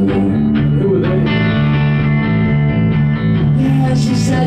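Live rock band playing, led by electric guitars over a stepping low bass line, with a thick sustained chord from about a second in.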